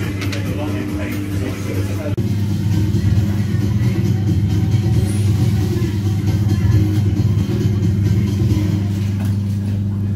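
Steady low machinery drone, getting louder about two seconds in and holding there.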